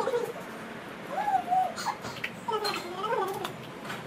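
A girl's high-pitched wordless whining cries, drawn out and bending up and down in pitch, several in a row with no words.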